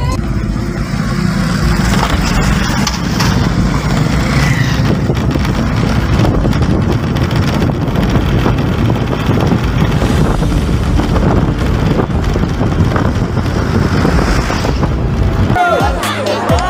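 A car driving over a rough, broken road, heard from inside the cabin: a steady low rumble of tyres and road noise.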